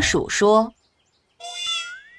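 A short cartoon cat meow, starting about a second and a half in and rising in pitch at its end, after a line of narration.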